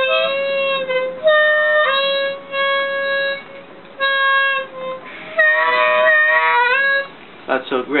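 TurboSlide harmonica played in a series of single notes, several bent in pitch, ending in a wavering run of bends; it is a demonstration of overblowing on the harmonica.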